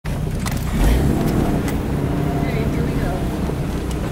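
A vehicle engine idling steadily, heard from inside a vehicle's cab, with a few light clicks in the first couple of seconds.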